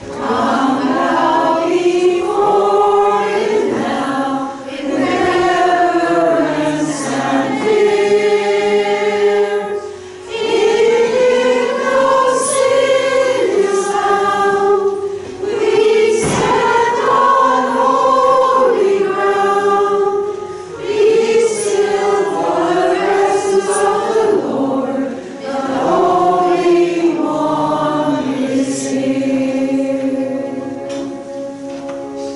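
Small church choir singing a hymn, line by line with brief breaks for breath between phrases.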